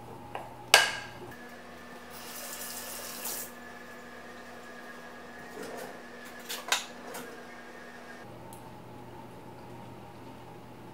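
A sharp clink of a kitchen utensil about a second in, then a kitchen faucet running briefly for about a second and a half, and a few more clinks around the middle of the stretch.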